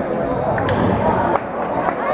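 Murmur of many voices in a gymnasium, with several sharp knocks: fencers' feet stamping and landing on the hardwood floor during a foil bout.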